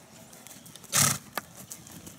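A trotting horse blowing out sharply through its nostrils once, about a second in: a short, loud, breathy snort. Faint clicks from its hooves or tack around it.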